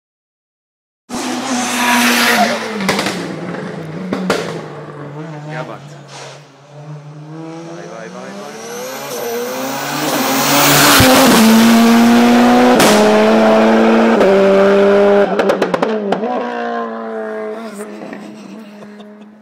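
Race car engine running hard through the gears, its pitch gliding up and stepping with each shift. It is loudest as the car passes close about two-thirds of the way through, with a quick run of sharp pops as the loudness drops, then fades away.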